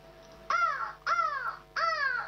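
A girl imitating a crow with her voice: three harsh caws, each falling in pitch, spaced a little over half a second apart.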